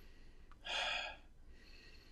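A man sniffing a fragrance test strip held under his nose: one sniff about half a second in, lasting about half a second.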